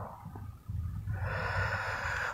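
A man's audible in-breath, drawn in a pause between spoken lines, starting about halfway through and lasting just over a second.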